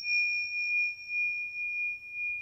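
A single struck bell-like chime ringing out as a sound logo. It holds one clear high tone with a fainter overtone above it, wavering gently in loudness as it slowly sustains.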